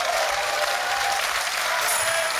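Game-show studio audience applauding steadily.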